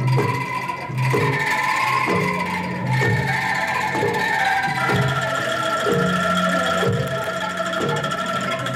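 Angklung ensemble playing a tune: shaken bamboo angklung sounding held melody notes over a steady low beat about once a second.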